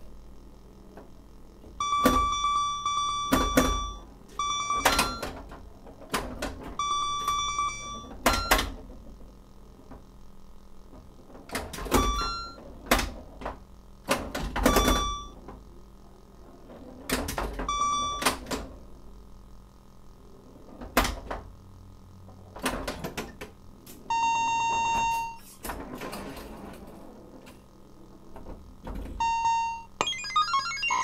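Early Bally Star Trek pinball machine played with its stock AS-2518-32 sound board: short electronic scoring bleeps, one held for about a second and a half near the end. These come among the sharp clicks and knocks of the playfield's solenoids, flippers and ball.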